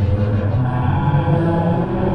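Low, chant-like drone: deep sustained tones that step between a few pitches, in an eerie horror soundtrack.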